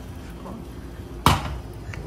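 A single sharp knock of a frying pan a little over a second in, as a crepioca is flipped and the pan comes down on the gas hob.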